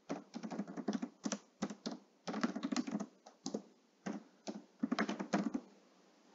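Typing on a computer keyboard: irregular runs of quick key clicks that stop shortly before the end.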